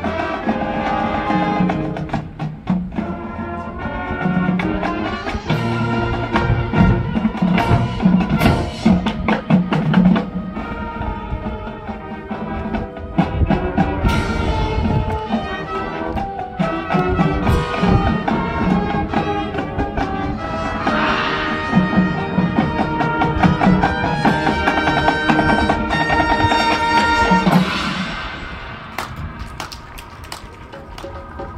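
High school marching band playing live: brass holding sustained chords over drum-line and mallet-percussion strikes, the music falling away near the end.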